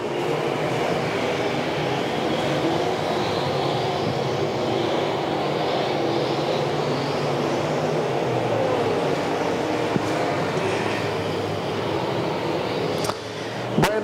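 Engines of several dirt-track Modified Street race cars running at race speed around the oval, blending into a steady drone.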